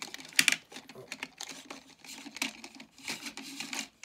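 Hands handling a small plastic toy playset and figure: irregular clicks, taps and rustling scrapes of plastic, in several short bursts.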